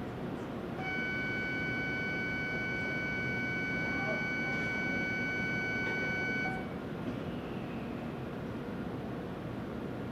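Shinkansen platform departure bell: a steady electronic ring of several pitches sounding together, starting about a second in and cutting off after about six seconds, signalling that the train is about to leave. A steady station hum runs underneath.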